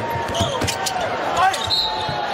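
Live NBA game sound: a basketball bouncing on the hardwood court and sneakers squeaking over crowd noise. A short, high whistle near the end as a foul is called on a drive to the basket.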